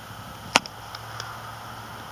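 A faint steady low hum with a single sharp click about half a second in and a faint tick later on.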